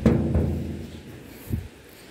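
A hand slapping the steel hood of a 1965 Chevrolet Impala: a sharp, drum-like thump that rings for about half a second, then a softer second slap and a small knock about a second and a half in.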